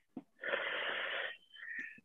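A person's long breathy exhale, a sigh of about a second, heard over a video call, followed by a shorter, higher breathy sound near the end.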